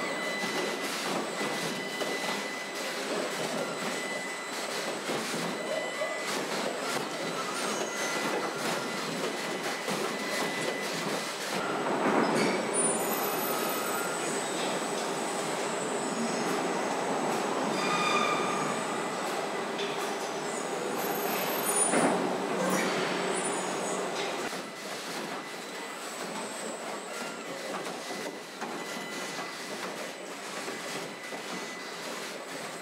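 Car body-shop production line: ABB industrial robot arms moving and welding steel car body shells, a steady mechanical noise with faint thin whines. Louder swells come about twelve, eighteen and twenty-two seconds in, and the noise eases a little near the end.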